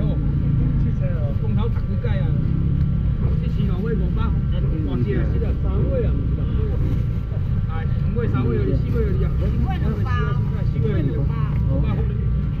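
Overlapping voices of a crowded open-air seafood market, with a vendor's calls among the chatter, over a steady low rumble.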